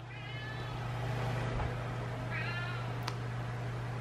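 Domestic cat meowing twice, two short high calls about two seconds apart, with a small click just after the second, over a steady low hum.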